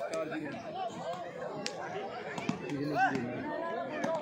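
A crowd of players and spectators chattering and calling out at once, with a louder shout about three seconds in. A few sharp slaps of hands striking the volleyball cut through the voices.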